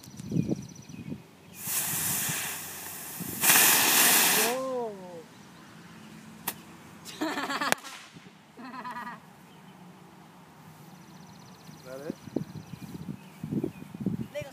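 A firework on a model plane, lit and spraying with a loud hiss in two spells of about two seconds, the second louder. Later a short crackling burst ends in a sharp pop.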